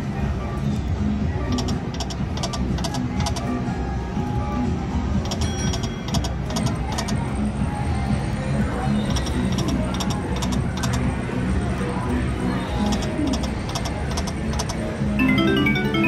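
Konami video slot machine's game sounds: steady electronic reel-spin music, with a cluster of sharp clicks about every four seconds as each spin's reels stop. Near the end a rising run of chime notes plays as a small win pays.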